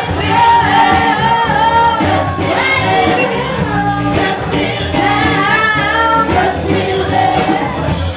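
Live band playing with several women singing together, holding long notes over drums and backing instruments.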